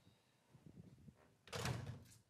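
A wooden door being pushed shut by hand, with a loud dull thud about one and a half seconds in, after a few soft movement sounds.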